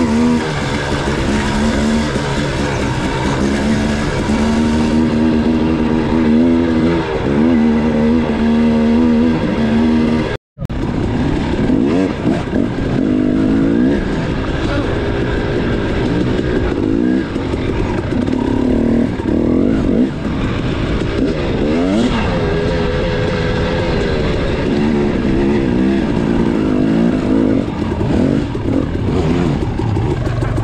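Dirt bike engine running under constantly changing throttle, its pitch rising and falling as the rider accelerates and backs off on the trail. The sound cuts out for an instant about ten seconds in.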